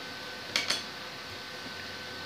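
Two quick light clicks close together, about half a second in, as small homemade printed circuit boards are handled and knock together, over a faint steady room hum.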